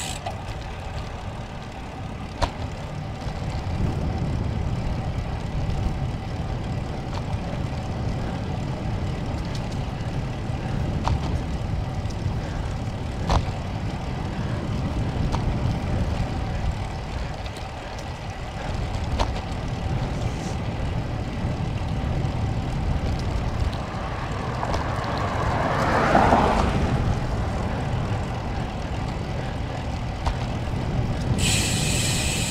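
Wind rumbling on a GoPro's microphone while riding a road bicycle at about 13 to 15 mph, with tyre noise and a few sharp clicks. A louder swell rises and fades about 25 seconds in.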